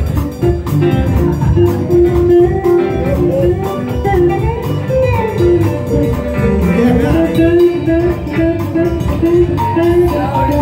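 Live band playing an instrumental passage: electric guitars with a lead line whose notes bend up and down, over bass and drums.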